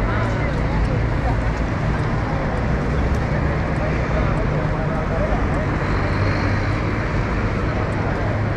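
Busy city-street ambience: a steady low rumble of road traffic, cars and buses passing and idling, with snatches of passersby talking.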